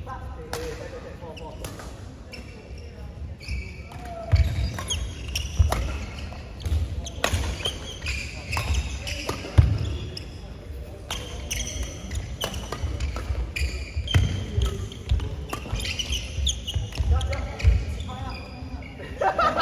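Badminton doubles rally: rackets hitting the shuttlecock with sharp cracks amid players' feet thudding on the court, irregular and several a second, starting about four seconds in after a quiet lead-up.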